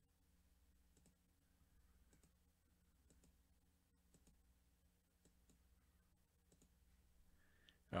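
Faint computer mouse clicks, roughly one a second, over near-silent room tone.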